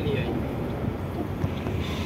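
Tank truck's diesel engine running at low speed, heard from inside the cab as a steady low rumble.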